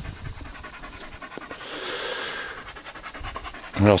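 A dog panting in quick, even breaths.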